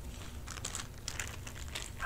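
A crinkly plastic bag being squeezed and handled, giving short irregular crackles from about half a second in.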